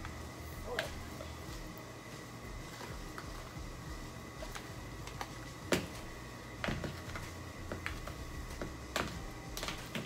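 Hands kneading seasoning into raw ground meat in a pan: soft squishing with scattered light clicks and taps, one sharper click about six seconds in. A low steady hum runs underneath.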